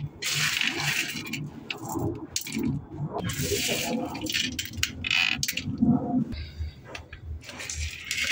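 Small white pebbles clattering as handfuls are scooped off a tiled floor and dropped into a plastic bucket, a steady run of clinks and rattles like pouring gravel.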